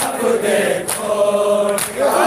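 Men's voices chanting a noha, a Shia mourning lament, together, with a sharp slap about once a second keeping the beat, typical of matam, hands struck on the chest.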